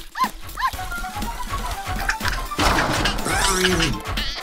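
A cartoon puppy yapping: three short, high yips in quick succession in the first second. Background music plays throughout and grows fuller and louder near the end.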